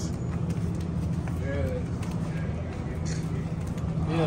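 Steady low machine hum of supermarket freezer cases, with a faint voice briefly about one and a half seconds in.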